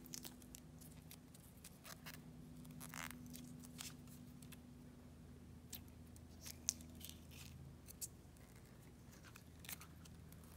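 Faint handling sounds of a silicone rubber mold being opened by hand to release a resin casting: scattered soft clicks and rubbing, with one sharper click a little before seven seconds, over a faint low hum.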